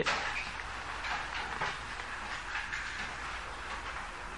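Steady background hiss with a low hum under it, flickering slightly, in a pause between sentences of a spoken lecture.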